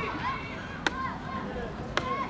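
A football kicked twice, two sharp thuds about a second apart, with players' voices calling across the pitch.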